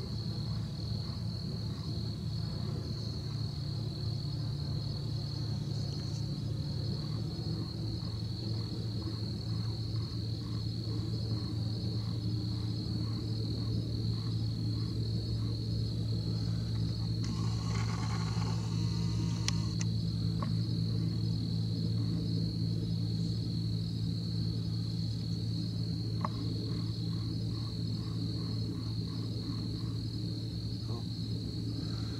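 Evening insect chorus: a steady, high-pitched trilling that runs without a break, over a low steady hum. A short rustling noise comes about halfway through.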